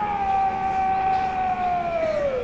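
A man's long, drawn-out shouted drill command on the parade ground, one held note sliding down in pitch as it ends.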